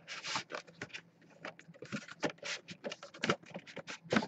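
A cardboard box being handled while a metal tin slides out of it: a quick run of short, irregular scrapes, rubs and taps of card on card and tin.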